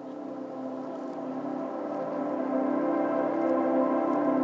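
Lofi hip hop music: a held chord of sustained tones with no bass or drums, slowly swelling louder.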